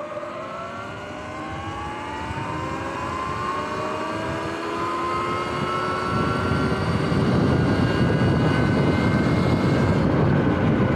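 Sur-Ron X electric dirt bike's motor and drive whining, climbing steadily in pitch as the bike accelerates and levelling off near the end. Wind noise on the microphone grows louder from about halfway through.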